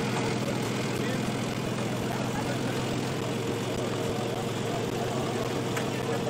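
A steady motor drone: a low, constant hum under an even hiss, with no change in pitch.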